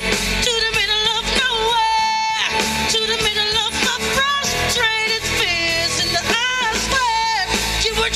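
A woman singing live into a microphone, holding and bending notes with vibrato and quick runs, over a pop backing track with guitar, all amplified through a PA system.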